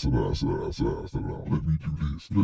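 A man's voice, loud and wordless, in a run of short pitched pulses about three a second.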